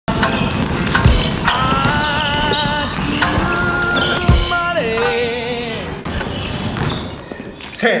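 Basketballs being dribbled on a hardwood gym floor, with repeated bounces and two heavy thumps about a second in and a little after four seconds, under music with a wavering pitched voice.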